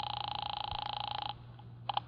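A telephone ringing once for about a second and a half, then cutting off, with a short click near the end as the call is answered.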